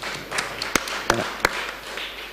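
Three sharp taps or knocks, about a third of a second apart, picked up close by a panel table's microphones over a soft rustling hiss.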